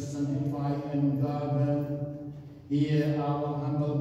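A priest chanting a liturgical prayer in a male voice on a near-monotone reciting tone, with a short breath pause about two and a half seconds in.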